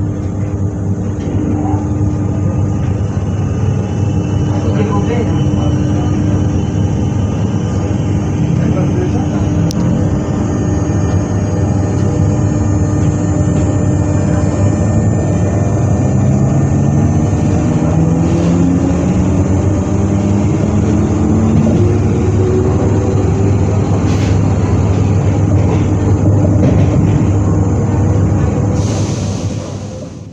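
Z 20500-series (Z2N) electric multiple unit's traction equipment running over a steady rumble and hum, with several whining tones climbing steadily in pitch through the second half as the train accelerates.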